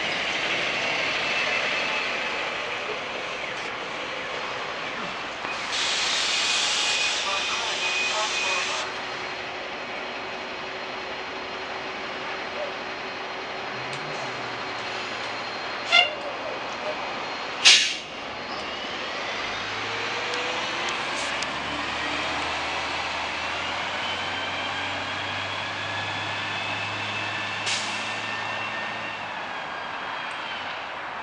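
Van Hool A300 transit bus pulling away: a burst of air hiss about six seconds in lasting some three seconds, then, after two sharp knocks, a slowly rising drivetrain whine as it accelerates away.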